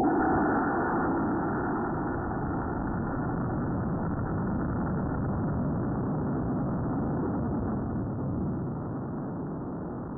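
Cluster of E12-4 black-powder model rocket motors firing, picked up by a camera riding on the rocket and heard slowed down: a loud, steady rushing noise that eases slightly near the end.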